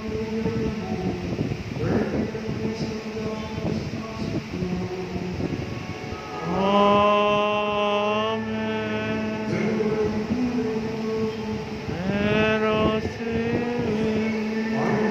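Liturgical chant sung over a steady sustained tone, with two long held notes: one about halfway through and another near the end.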